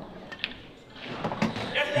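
Pool cue tip striking the cue ball with a sharp click about half a second in, then softer clicks of ball-on-ball contact as a yellow object ball is potted.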